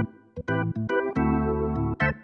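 Yamaha P115 digital piano played with an organ voice preset: sustained chords that cut off sharply when the keys are released, with short silent gaps between them.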